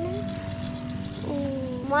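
A steady low engine rumble from a passing motorbike, with a girl's voice speaking briefly over it near the start and again in the second half.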